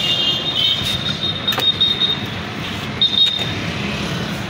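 An electric-motor-driven sweet-lime (mosambi) juice crusher running: a steady mechanical hum with a thin high whine from the belt-driven flywheel machine, and a single sharp click about one and a half seconds in.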